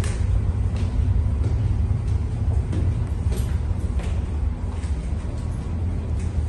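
Steady low rumble of a ship's engines and machinery heard inside the hull, with light footsteps about every two-thirds of a second as someone climbs a stairway.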